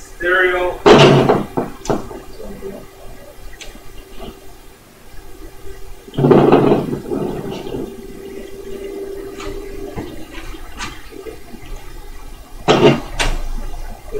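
Webcor Music Man portable reel-to-reel tape recorder being worked by hand: its control keys give three loud clunks, at about a second in, around six seconds in and near the end, and a steady motor hum runs until about ten seconds in.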